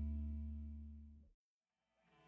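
Background music: a held chord fading out, gone a little over a second in, then dead silence.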